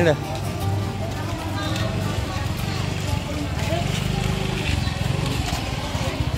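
A small motorcycle engine running at low speed close by, a steady low throb, with market voices and music around it.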